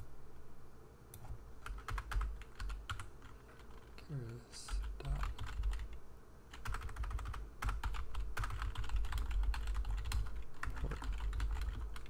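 Typing on a computer keyboard in bursts of rapid keystrokes: a short flurry about two seconds in, then a longer, denser run from about six and a half seconds almost to the end.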